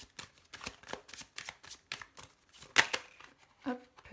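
A small deck of Lenormand cards being hand-shuffled: a quick, irregular run of papery card flicks and slaps, with one louder slap just before three seconds in.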